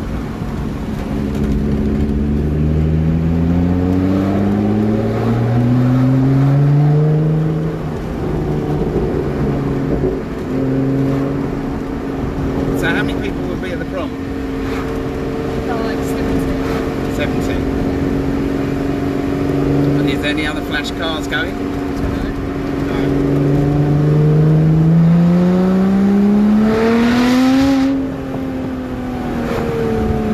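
Car engine heard from inside the car, pulling up through the revs for several seconds, dropping back at a gear change about seven seconds in, then holding a steady pitch while cruising. Near the end it revs up again and then falls away as it comes off the throttle.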